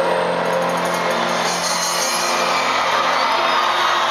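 Live pop band playing an instrumental stretch between sung lines, with held bass notes, heard from among the audience in an arena with crowd noise underneath.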